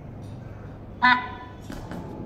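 A lull in a call-line conversation: a low steady hum, then one short voiced syllable from a person about a second in, followed by a few faint clicks.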